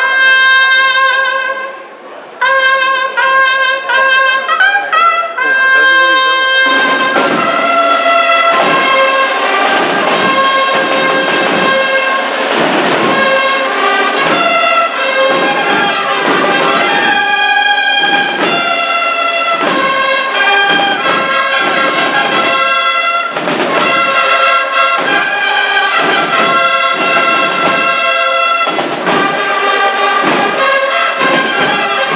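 Holy Week processional band music led by trumpets and trombones. The brass plays alone at first, then drums come in about six or seven seconds in and the full band plays on with a steady beat.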